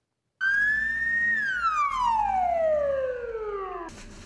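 Ambulance siren giving a single wail: after a short silence the pitch climbs briefly, then slides steadily down for about two and a half seconds and cuts off.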